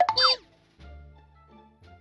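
A short comic sound effect at the start, a quick glide falling in pitch, followed by soft background music.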